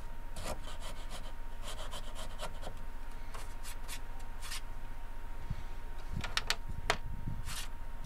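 Hand chisel paring and scraping wood from a guitar's back reinforcement strip in a run of short, irregular strokes, notching it to take a back brace. Near the end come a few sharp clicks as steel tools are handled and set down on the bench.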